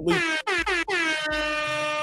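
Air horn sound effect: three short blasts, each dipping in pitch as it starts, then one long held blast.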